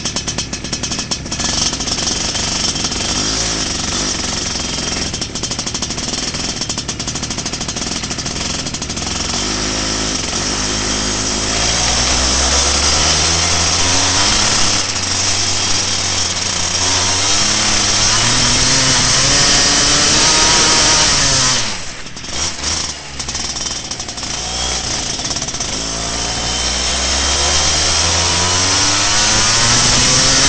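Racing kart's two-stroke engine heard close up from the kart itself: uneven and lower at first, then revving up in long rising sweeps and falling back as the throttle is lifted, with a sharp brief drop about twenty seconds in before it picks up again.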